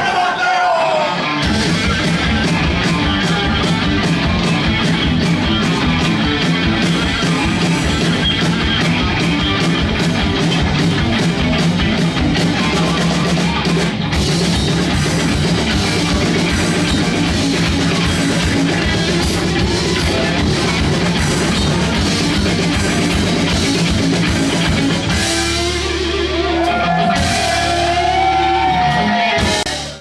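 Live rock band playing loud, driving music on electric guitar and drum kit, with steady fast drumming. Near the end the drumming drops away and held chords ring.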